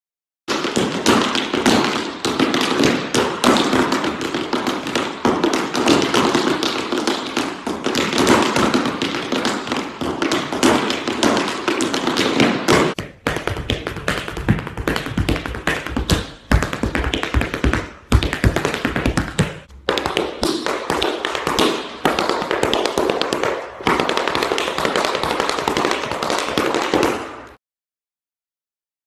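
Tap shoes striking a hard dance-studio floor in fast, dense tap-dance rhythms, with a few brief pauses. The taps start abruptly about half a second in and cut off sharply just before the end.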